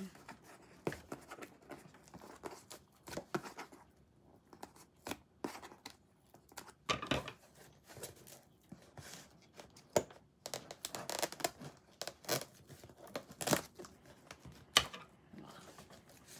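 Packing tape being picked at and peeled off a cardboard box, with scissors cutting at it: a long run of short, irregular rips and crackles.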